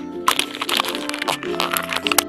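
Rapid rustling, crackling and knocking handling noise as an action camera is grabbed and covered with cloth, over steady background music.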